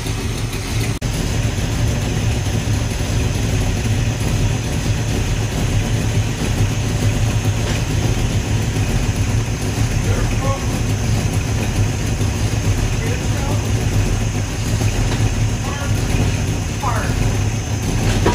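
1973 Ford Mustang Mach 1's V8 engine idling steadily, warmed up to normal operating temperature.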